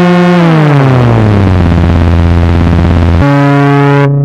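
EMS Synthi AKS analog synthesizer tone sliding down in pitch, settling into a low drone with a fast flutter, then jumping suddenly to a higher steady note about three seconds in.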